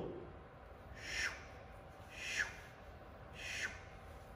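Thumb pressed and swept through fine sand on a glass light table, three soft swishes about a second apart as flower petals are drawn.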